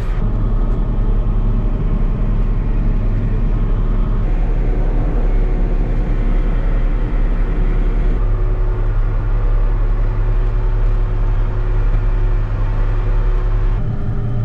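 John Deere 8870 four-wheel-drive tractor's engine running steadily under load while pulling a disc, a deep, even drone. The sound shifts abruptly about four and eight seconds in.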